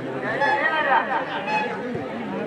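Large crowd of spectators chattering, many voices overlapping at once.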